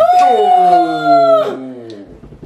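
Drawn-out vocal cry from the onlookers as a drink is downed, one voice held on a steady pitch while another slides down, lasting about a second and a half before fading.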